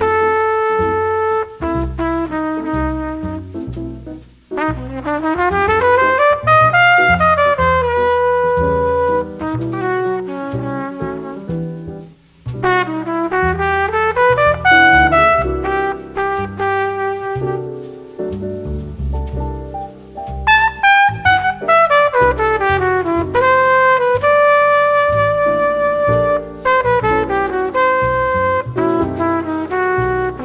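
A slow jazz ballad played by a quartet of trumpet, piano, double bass and drums, the trumpet carrying the melody in long held notes and quick rising and falling runs over piano chords and bass.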